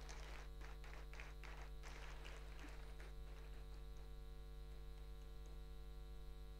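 Faint, scattered applause from a small audience in a large hall, dying away about three and a half seconds in, over a steady electrical mains hum.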